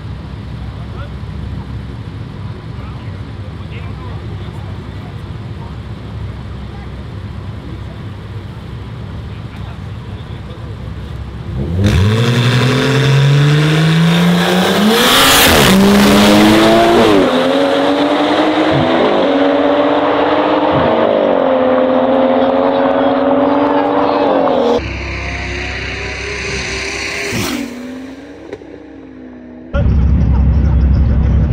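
Two BMW sedans, an M340 and a 540, launching in a street drag race after about twelve seconds of steady background rumble. The engines run hard at full throttle, their pitch climbing and dropping back at each upshift, several times in a row.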